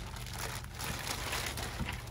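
Clear plastic bag crinkling as a boxed ventilator unit is pulled out of it, an irregular rustle with a steady low hum beneath.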